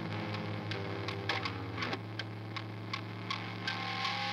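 A steady low hum with light ticks or clicks scattered irregularly through it, about three or four a second.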